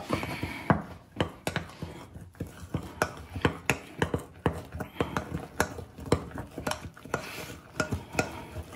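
A fork stirring brownie batter in a glass mixing bowl, clicking against the glass about three or four times a second in an uneven rhythm.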